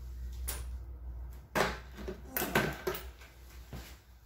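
A steady low hum that cuts off about a second and a half in, then several knocks and a short clatter of hand tools being handled.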